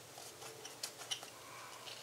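Faint paper rustling and a few light, scattered taps as hands press glued photos down onto a paper album page.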